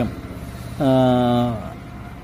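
A man's voice holding one drawn-out hesitation vowel ("ehh") for under a second, partway in, over a low steady background hum.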